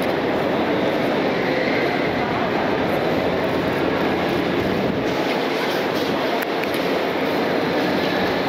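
Steady, loud rumbling hubbub of an airport terminal, with indistinct voices mixed in.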